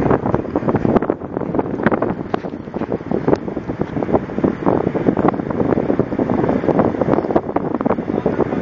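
Wind buffeting the microphone: a loud, rough, gusty rumble that flutters up and down throughout.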